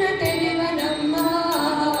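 Children singing a Kannada film song into microphones, one melodic line that glides and holds its notes, with a light, regular percussive tick behind the voice.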